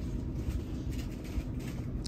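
Steady low rumble of a shop's background noise, room hum with no clear separate events.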